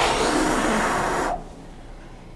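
A man blowing one long, hard breath of air at the edge of a closed window, close to the microphone, testing it for a draught; the hiss stops after about a second and a half.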